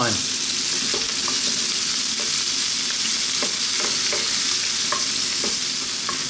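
Sliced onion, ginger and garlic sizzling in hot oil in a wok on high heat, with a few short scrapes of a wooden spatula stirring them.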